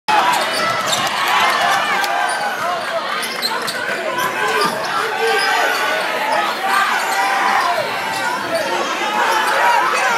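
A basketball being dribbled on a hardwood court in a crowded gym, under steady crowd chatter and shouting.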